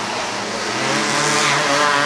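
A racing kart's engine running past on the dirt track: a buzzing engine note that swells about halfway through and is loudest near the end.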